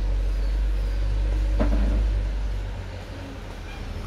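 Low rumble that swells for the first two and a half seconds, then fades.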